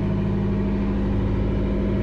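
The yacht's engine running steadily, heard inside the cabin as an even, unchanging hum.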